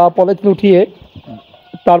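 A shed full of young chicks peeping together as a steady high chatter, with a man's voice speaking over it in the first second.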